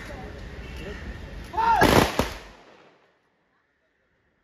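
A ceremonial rifle volley from a police guard of honour giving a gun salute: a loud, slightly ragged crack just after a short shouted command, with a second shot a moment later.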